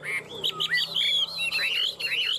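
Caged Chinese hwamei (họa mi) singing: a fast run of loud whistled notes sweeping up and down, settling in the second half into repeated swooping phrases, several a second.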